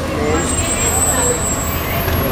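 Street traffic: a steady low rumble of idling vehicles, with people talking nearby.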